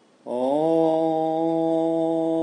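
A single voice chanting a long, steady "Om". It comes in about a quarter second in with a brief upward slide into the held note.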